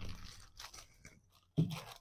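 Plastic hair-product bottles and packaging handled on a table: a faint rustle in the first half second, then a few small clicks.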